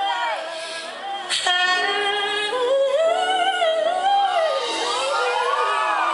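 A woman singing a fast, ornamented vocal run live into a microphone, her voice sliding up and down in quick turns of pitch.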